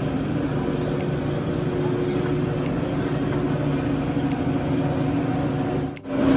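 Restaurant room noise: a steady hum with indistinct background voices, dipping sharply at the very end.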